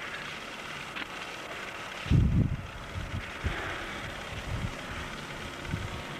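Wind buffeting an outdoor microphone: a steady hiss with irregular low rumbles, the strongest gust about two seconds in.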